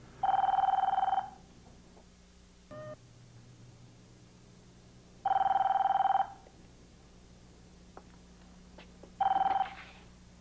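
Multi-line office desk telephone ringing with a steady electronic tone. It rings three times, each ring about a second long and about four seconds apart; the third ring is cut short as it is picked up.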